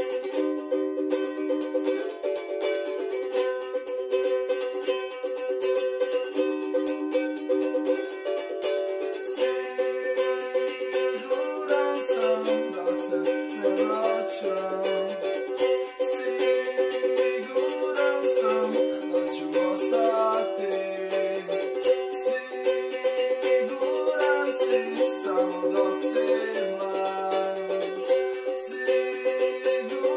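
Ukulele strummed in steady chords. A man's voice sings along with it from about twelve seconds in.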